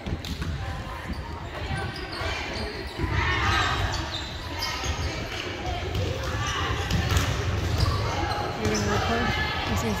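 Volleyballs being hit and bouncing on a hardwood gym floor, with background chatter of players, all echoing in a large gym.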